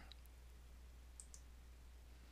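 Near silence with a few faint computer mouse clicks: one right at the start and two close together just over a second in.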